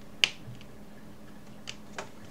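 Sharp plastic clicks of a servo-style lead being pushed onto the pin header of a small RC receiver: one loud click shortly in, two fainter ones near the end.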